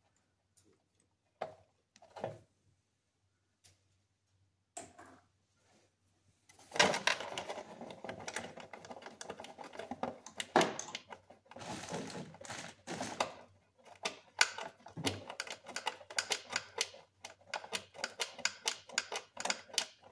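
A few separate clicks, then from about seven seconds in a dense, irregular crackling and crinkling of a cut-up plastic container wedged into the engine bay as a makeshift coolant funnel, flexing as it is pressed and shifted.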